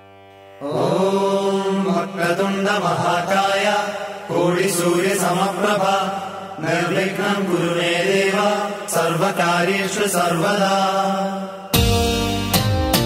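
Hindu devotional mantra chanting with musical accompaniment. It enters loudly about half a second in, after a soft sustained drone, and goes on in phrases with short breaks between them. Near the end it gives way abruptly to quick plucked-string notes.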